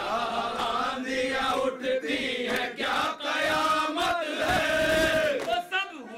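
Several men chanting a noha refrain together in Urdu: a mournful lament sung by a group of male voices.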